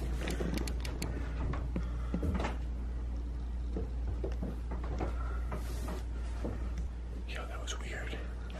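Quiet room tone with a steady low hum, scattered faint clicks and knocks, and faint muffled voices now and then.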